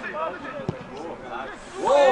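Men's voices calling out across an outdoor football pitch, with a single sharp thump about two-thirds of a second in; a louder shout starts near the end.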